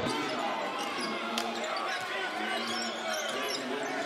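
Live court sound of a basketball game in an indoor arena: a ball dribbled on a hardwood court, with faint crowd and player voices echoing in the hall and one sharp knock about a second and a half in.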